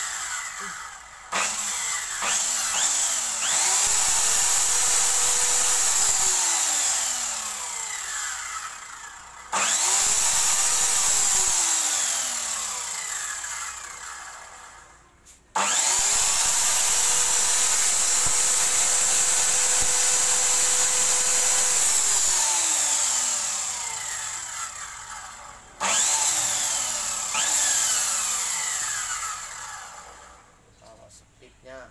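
Ryu 7-inch miter saw's electric motor switched on and off about five times with nothing being cut: each time it spins up to a steady high whine, runs for several seconds, then winds down with a falling pitch.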